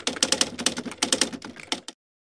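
Typewriter sound effect: a quick run of key clacks that stops just before the end.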